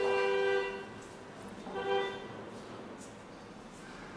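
A vehicle horn honks twice: a steady, even-pitched honk lasting just under a second at the start, then a shorter one about two seconds in.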